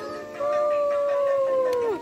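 One long howl-like call held for about a second and a half, sliding down in pitch at the end, over background music.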